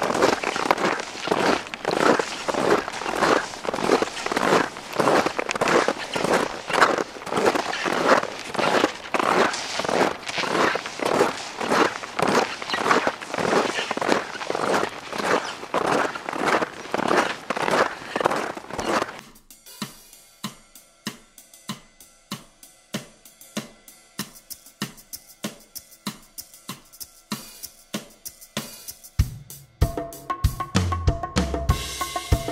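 Snowshoe footsteps crunching in deep snow at a steady walking rhythm. About two-thirds of the way through they cut off, and background music with a drum-kit beat takes over.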